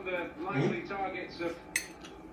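A metal fork clinking and scraping against a plate during eating, with one sharp clink near the end.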